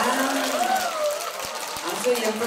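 Audience applauding as a dance ends, with a woman's voice heard over it in the first second.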